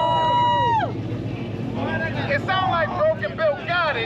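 Idling cars, a Dodge Charger SRT8 and a Ford Mustang, give a steady low rumble under loud voices. A man's long drawn-out call through a megaphone comes in the first second, and shouting follows in the last two seconds.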